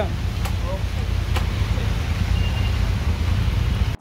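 Motorcycle engine idling steadily, a low continuous rumble, with a couple of faint clicks over it.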